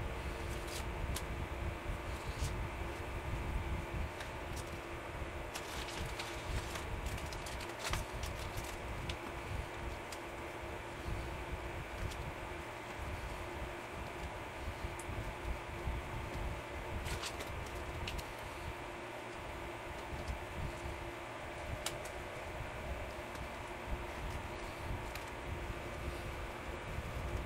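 A steady low rumble with a constant hum, broken by a few brief light clicks and taps.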